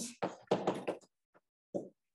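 Chalk on a blackboard while words are being written: a series of about six short taps and strokes with brief gaps between them.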